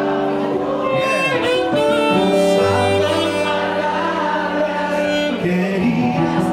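Live band playing a tropical cumbia-style tune, with a saxophone carrying the melody in sustained, sliding notes over bass, keyboard and guitar.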